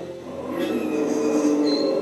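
Prepared string quartet (two violins, viola and cello) holding several overlapping sustained tones, with a thin high note entering near the end.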